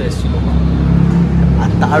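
A man's voice talking at the very start and again near the end, over a steady low hum that runs underneath.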